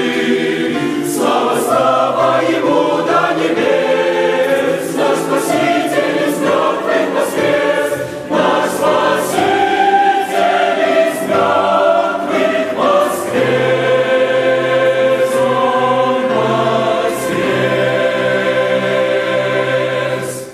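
Mixed youth choir singing a hymn with piano accompaniment, moving through changing chords and then holding one long final chord that is released at the very end.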